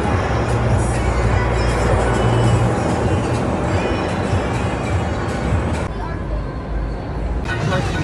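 Music and voices over a steady low rumble: the busy din inside an indoor amusement park, with the sound thinning briefly about six seconds in.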